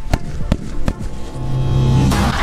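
Background music with a beat of sharp percussive hits, giving way after about a second and a half to a low swelling tone.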